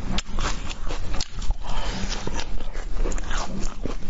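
Close-miked chewing of a mouthful of frozen fruit: wet, irregular mouth sounds with many sharp clicks and crackles.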